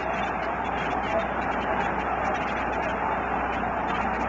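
Stadium crowd noise carried on an old radio broadcast recording: a steady crowd din with a thin, muffled sound and nothing above the middle range.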